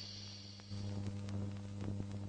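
Electrical mains hum on the soundtrack, a steady low hum with overtones that steps up louder about two-thirds of a second in, with scattered faint clicks. The tail of the logo chime fades out at the start.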